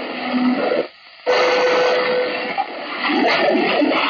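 Radio static from a receiver's speaker while scanning CB channels in narrowband FM. There is a short drop-out about a second in, then a steady tone over the hiss for about a second.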